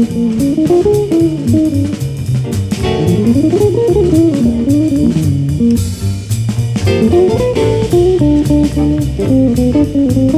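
Live jazz band: a guitar plays a single-note solo line, with a quick run up and back down about halfway through. Underneath, a plucked double bass plays a walking line, along with piano and a drum kit keeping time on the cymbals.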